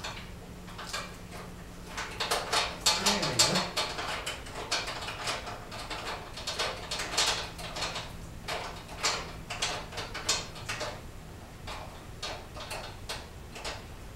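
Irregular metallic clicks, clinks and scrapes of hardware being handled and fitted by hand where a steel equipment rack meets an electric wheelchair base, busiest a few seconds in, over a faint steady low hum.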